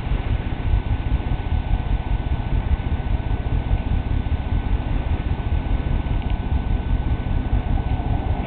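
Wind buffeting the camera microphone: a steady, fluttering low rumble, with a faint steady high tone behind it.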